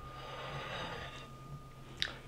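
A plate left ringing after a clink: one faint, steady tone that dies away about a second in, with a soft breathy rustle under it.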